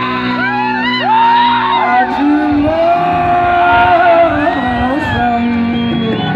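Live band playing through the stage loudspeakers, with amplified voices and the crowd shouting and cheering over the music.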